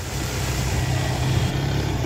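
Honda motorcycle engine running steadily as the bike rides along, growing a little louder in the first half-second.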